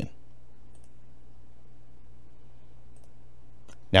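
Steady low hum of room tone, with a few faint mouse clicks as a menu item is selected on a computer.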